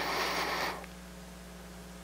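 Low, steady electrical mains hum from the microphone and sound system, under a soft hiss that fades out before the first second.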